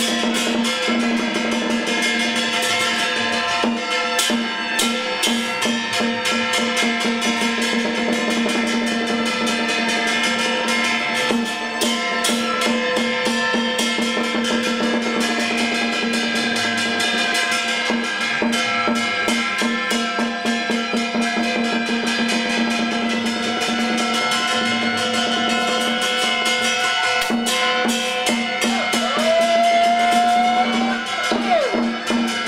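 Taoist ritual percussion music: fast, steady drumming with metal percussion over a steady ringing tone. A rising tone enters near the end.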